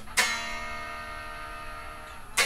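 Electric guitar: one chord struck about a fifth of a second in and left to ring, fading slowly.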